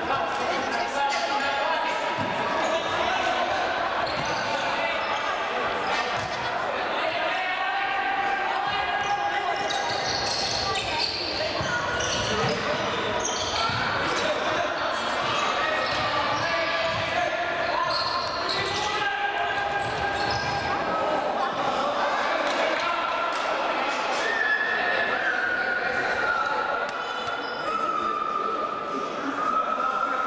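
Sound of a futsal match in a large, echoing sports hall: players shouting to each other while the ball is kicked and bounces on the hard court.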